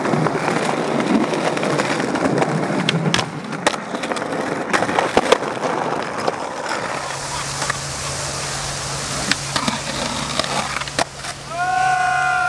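Skateboard wheels rolling over rough pavement, with several sharp clacks of the board hitting the ground as tricks are popped and landed.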